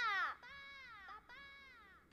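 A cartoon character's high-pitched cry falls away in pitch at the start, followed by two softer, drawn-out whimpering cries that each rise slightly and then fall.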